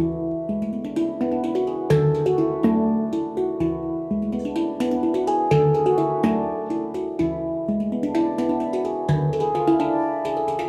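Several Yishama Pantam handpans played by hand in a solo: ringing steel notes struck in a continuous rhythmic pattern, with frequent sharp taps among the sustained tones.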